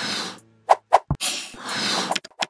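Electronic logo sting: a short swoosh, two quick pitched hits, a deep thump just past a second in, then a swoosh that swells louder toward the end.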